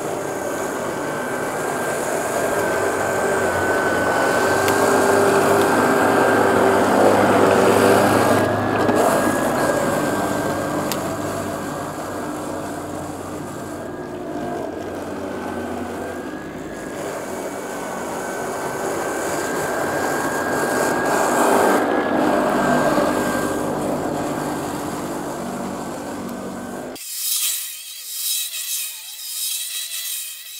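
Ryobi 18V One+ cordless dethatcher/scarifier running on a single 40V battery through a homemade adapter, its electric motor whining steadily as the spinning blades rake thatch out of the lawn. It swells louder twice, then cuts off abruptly near the end.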